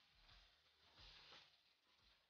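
Near silence: only a faint hiss, swelling slightly about a second in.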